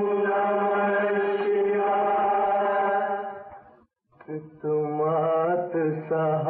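A long, steady chanted tone held for over three seconds, fading out. After a brief pause a singing voice with vibrato begins a devotional Hindi song.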